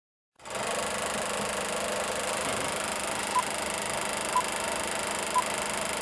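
Old-film countdown-leader sound effect: a movie projector running with a steady whir and crackle, starting just after a moment of silence. Short high beeps mark the count once a second, three of them from about halfway.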